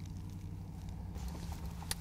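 Low steady hum of a car's engine idling, heard from inside the cabin.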